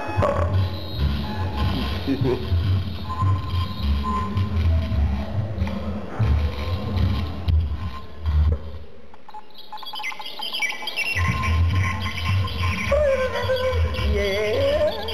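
Circuit-bent electronic noise played through a subwoofer: a deep, uneven pulsing bass with a thin steady tone above it. It drops out for about two seconds past the middle, then comes back with warbling, gliding squeals high up and a wavering, wobbling tone near the end.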